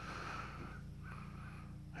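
Quiet, soft breaths close to the microphone, a puff about every second, over a faint steady low hum; the generator's engine is not yet running.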